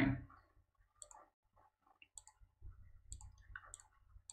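Several faint computer mouse clicks, spaced about a second apart.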